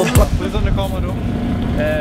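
A song with singing cuts off right at the start. After it comes a steady low outdoor rumble with faint voices in it.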